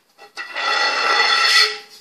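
A glass fluorescent tube moved across a concrete floor: a scraping, rumbling sound with a ringing tone, starting about half a second in and lasting a little over a second.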